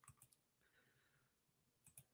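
Near silence broken by two faint clicks, one just after the start and one near the end: computer mouse clicks while a screen share is set up.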